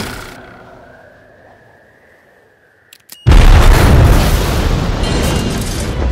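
Film sound effect of an explosive arrowhead, caught in a hand, going off. A faint rising whine and a couple of clicks lead into a sudden loud explosion about three seconds in, and the rumble then carries on.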